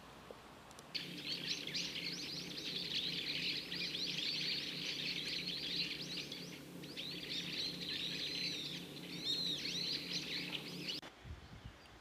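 Many birds chirping and singing together in a dense chorus of quick chirps and short whistled phrases, over a low steady hum. It starts suddenly about a second in and cuts off about a second before the end.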